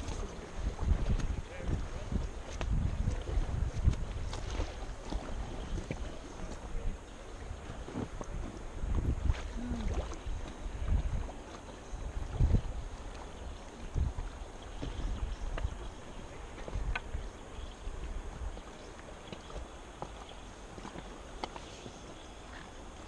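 Wind buffeting the microphone of a camera on an inflatable raft drifting down a calm river, in uneven low gusts that ease off in the second half, over a faint wash of moving water, with a few small knocks.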